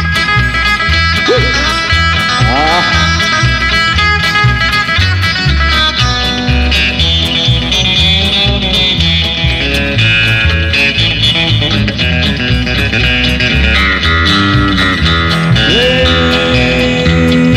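Instrumental break of a country song: an electric guitar plays a lead over a bass line, with a few bent notes in the first few seconds.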